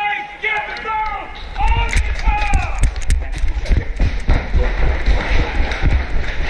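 A man's wordless voice for the first couple of seconds, then hurried running footsteps with irregular thumps and knocks, heard as a heavy low rumble on a body-worn camera microphone.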